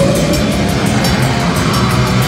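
Live heavy metal band playing loud: distorted electric guitars, bass guitar and a drum kit with steady cymbal and snare strokes.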